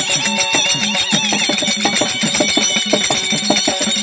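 Folk-theatre ensemble music led by a barrel drum played with the hands in quick strokes, over held melodic tones and a metallic ringing.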